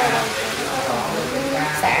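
Speech: people talking in a kitchen, with a faint steady hiss underneath.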